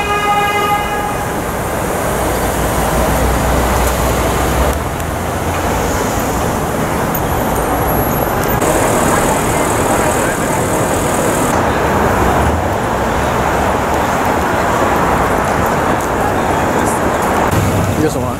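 City street traffic noise: a steady wash of passing cars and engines, with a car horn tooting for about a second at the start.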